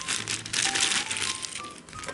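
A plastic zip bag full of small flat miniature-kit pieces being shaken and handled: the bag crinkles and the pieces rattle and clatter against each other, easing off about a second and a half in.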